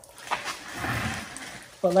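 Transmission fluid trickling from the open axle hole of a 2003 Hyundai Sonata's transaxle after the CV axle has been pulled out: a soft, steady trickle. A man's voice starts near the end.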